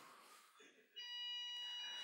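A steady, high electronic beep tone that starts suddenly about a second in and holds at an even pitch and level.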